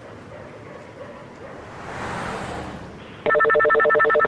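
A telephone ringing over a phone line, heard as a loud rapid warbling ring of about one second that starts near the end, as a 911 call connects. Before it there is a low hiss and a soft whooshing swell.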